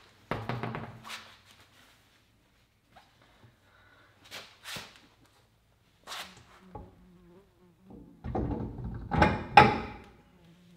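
A wheel and tire being handled and fitted onto a car's rear hub: a cluster of knocks as it is set down and offered up, a few scattered clicks, then a louder run of knocks near the end as it is seated on the hub. A faint wavering low buzz runs between the handling noises.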